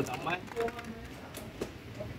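A few light clicks and taps of hand tools and parts being handled during motorcycle engine work, under faint voices in the background.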